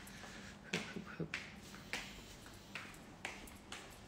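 A series of light, sharp clicks and taps, about seven spread unevenly over a few seconds, over faint room tone.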